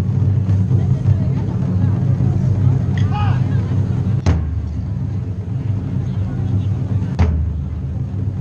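Open-air crowd murmur over a steady low rumble, with one short call about three seconds in. Two sharp single knocks come about three seconds apart, near the middle and near the end.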